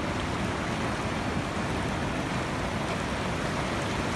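Fast-flowing snowmelt mountain river rushing over rocks and a pebble bank: a steady, even rush of water.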